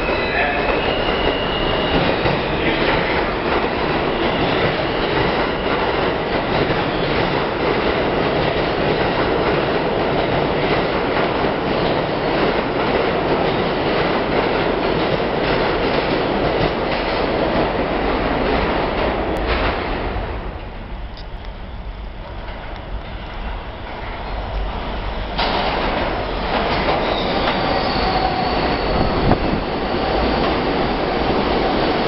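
R160 subway trains in a station. One train runs loud and steady through the station on the far express track for most of the first twenty seconds, then the noise dies down. About 25 seconds in, a second train comes in suddenly on the near track and runs loud again, with a high wheel squeal near the end.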